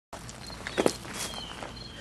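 Two short knocks a little under a second in, over faint steady background noise.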